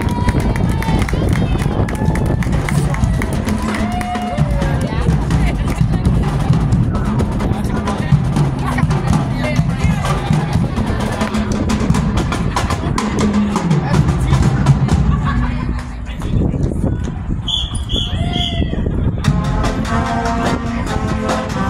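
Marching band playing as it marches past, with horns holding low notes over steady drumming.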